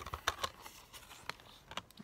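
Plastic Blu-ray case being handled and opened: a few light plastic clicks and taps as the case is worked open.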